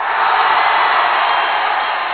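Crowd cheering, a steady loud wall of many voices that starts abruptly.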